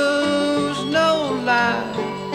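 Acoustic folk band playing: banjo and guitar under a held melody line whose notes bend and slide in pitch.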